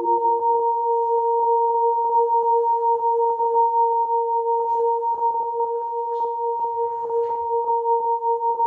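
Contemporary music for horn and live electronics: a steady, pure-sounding held tone with a second tone an octave above it, over a faint scratchy noise texture. A lower tone drops out just after the start.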